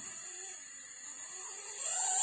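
Homemade self-excited boost inverter running under load with a steady high-pitched whine; near the end a lower warbling tone comes in.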